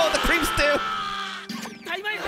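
Anime soundtrack: a character's voice crying out in bursts over background music with long held notes, and a short falling whistle-like glide near the end.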